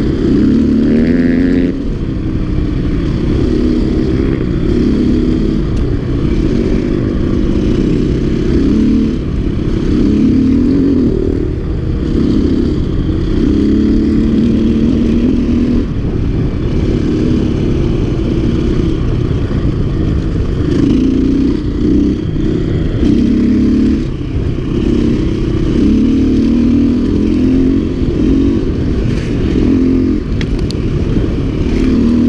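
Dirt bike engine running hard on a trail ride, its pitch rising and falling every second or two as the throttle opens and closes, with steady low noise underneath.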